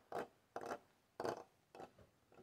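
Plastic model horse's hooves tapping on a wooden floor as it is walked along by hand: four light taps about half a second apart, the last one faintest.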